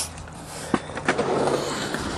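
Skateboard wheels rolling on a concrete skatepark surface, with a single sharp click a little under a second in; the rolling rumble grows louder through the second half.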